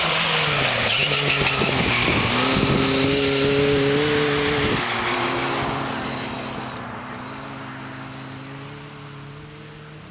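Lada Niva's 1.7-litre four-cylinder petrol engine driving past under throttle. Its pitch falls in the first second, climbs and holds higher, then drops sharply near five seconds. It then fades steadily as the car pulls away into the distance.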